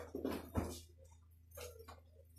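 Steady low electrical hum from an amplified sound system, with a few short, quiet, irregular sounds over it.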